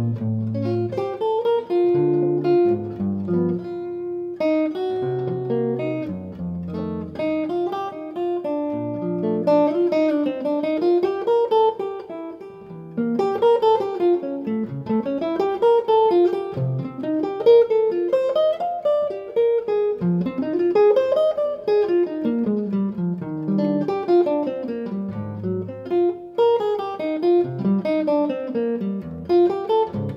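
Washburn J6S archtop electric guitar played solo through a TwinKat jazz amp, heard through a room microphone. It plays a continuous jazz passage, bass notes under moving melody lines and chords, with a brief easing off about twelve seconds in.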